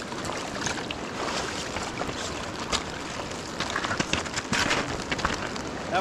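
River water running over a stony bank, with wind buffeting the microphone. Scattered short clicks and knocks sound through it, bunched around four to five seconds in.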